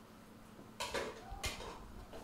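A spoon knocking and scraping in a metal cooking pot, twice, a little under a second in and again about half a second later.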